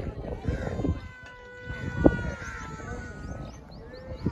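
An animal's long drawn-out call, held on one slightly falling pitch for about two and a half seconds, with a sharp knock partway through.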